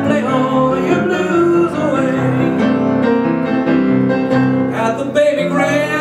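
A man singing a ballad into a microphone over live piano accompaniment, holding a wavering note near the end.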